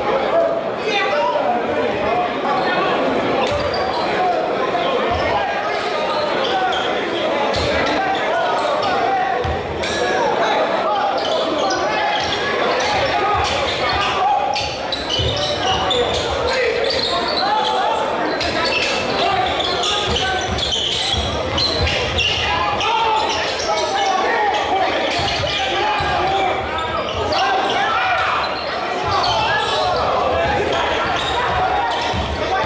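Basketball bouncing on a hardwood gym floor, with players' feet thudding, under steady crowd chatter echoing in a large gym.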